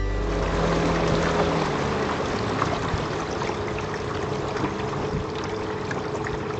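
River water flowing and rushing in a steady wash of noise around a boat. The last held notes of guitar music fade out in the first two seconds.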